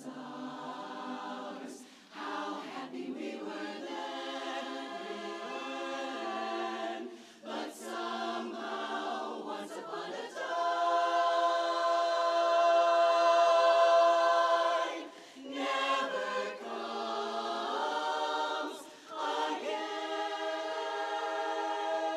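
Women's barbershop chorus singing a cappella in close harmony, held chords broken by short pauses for breath between phrases. A long chord past the middle is the loudest point.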